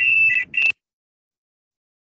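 A high-pitched electronic tone, steady, with a lower tone pulsing in and out about twice a second. It breaks off about half a second in, comes back for a moment, then cuts off abruptly into dead silence.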